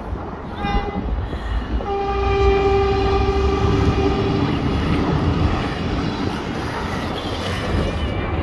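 Horn of a passing River Line light-rail train: a short toot, then a long blast of a few seconds with a second, lower note joining near its end, over a low rumble.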